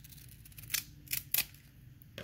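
A 1989 Upper Deck foil baseball card pack being worked open at its crimped seam, giving three short crackles of the wrapper about a second in.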